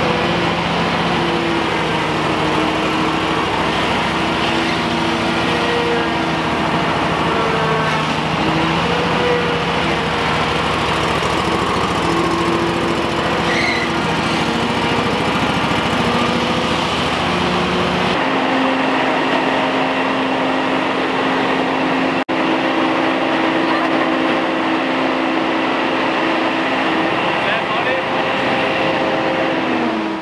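Hurricane stand-on leaf blower running, its engine and fan making a loud, steady roar with a few humming tones that shift in pitch. About eighteen seconds in, the sound changes abruptly and the low rumble drops away.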